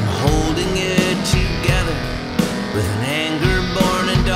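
Rock song instrumental passage: electric guitar lines with bending notes over a full rock backing, between sung lines.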